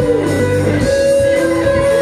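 Live worship band music: strummed guitars under a woman's sung lead vocal.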